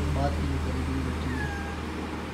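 Persian cat meowing.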